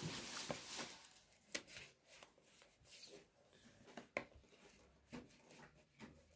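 Faint rustling, then a few small scattered clicks, from a cardboard smartwatch box being handled as its seal stickers are taken off before opening.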